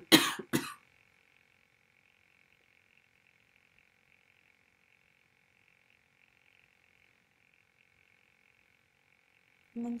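A woman coughing twice in quick succession, a sign of the slight cough she has. Then near silence with a faint steady hiss until a voice resumes at the very end.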